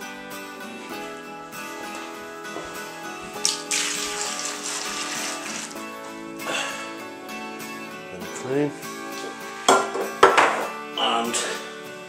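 Background acoustic-guitar music. Over it, dissolved malt extract is poured from a tin into a plastic fermenter bucket, a splashing pour starting about three and a half seconds in and lasting a couple of seconds, with a few sharp knocks near the end.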